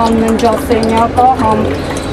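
Water poured from a plastic bottle into a metal frying pan, heard beneath a voice that talks throughout.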